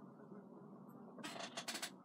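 Makeup items being handled at a desk: a short run of quick clicks and scrapes a little past halfway, over a steady low background hum.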